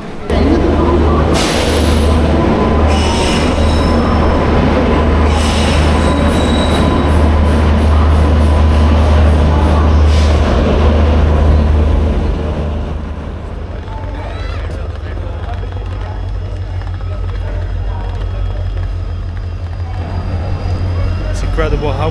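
A train at a railway station: a loud low rumble with a few brief high squeals during the first half, easing to a quieter, steady rumble after about twelve seconds.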